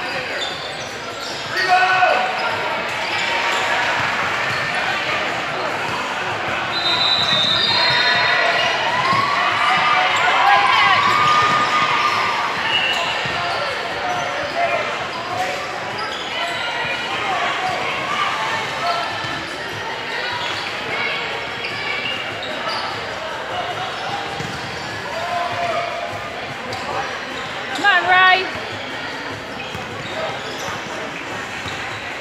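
Basketballs dribbling on a hardwood gym floor during a game, mixed with players' and spectators' voices in a large sports hall. Short squeals are heard now and then, and there is a louder burst near the end.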